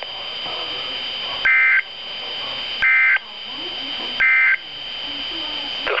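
Weather alert radio sounding the three short end-of-message data bursts of an Emergency Alert System message. Each burst is a harsh two-pitch buzz of about a third of a second, evenly spaced about 1.4 seconds apart, over steady radio hiss with a faint high whine.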